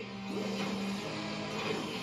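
TV soundtrack music with mechanical effects under it as the Megazords combine into the Ultrazord, heard played back through a television.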